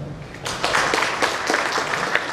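Audience applause: many hands clapping together, starting about half a second in.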